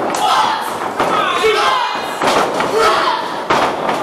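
Several heavy thuds of impacts in a wrestling ring, about two to three and a half seconds in, among shouting voices in a large hall.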